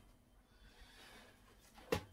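Near silence: faint room tone, with one short sound just before the end.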